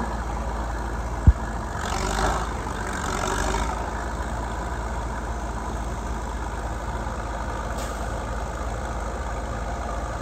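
Old crawler bulldozer's engine idling steadily, with one sharp knock about a second in and a short louder stretch between about two and four seconds in.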